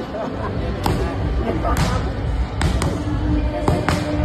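Muay Thai strikes landing on handheld pads: about six sharp slaps, spaced roughly a second apart, with two quick pairs late on.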